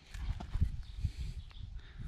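Footsteps on dry garden soil and handling noise on the camera: irregular low thuds with a few light clicks.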